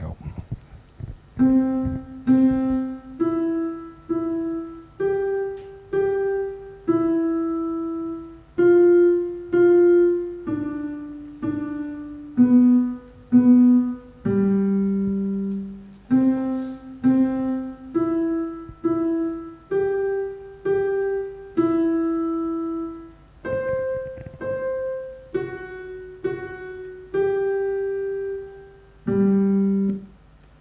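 Piano notes from the Expectation Piano played one at a time as a slow single-line improvised melody, many notes struck twice in a row and each left to ring out. The melody starts about a second and a half in and ends on a lower held note near the end.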